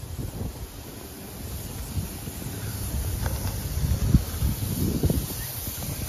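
Wind buffeting a phone microphone outdoors, an uneven low rumble.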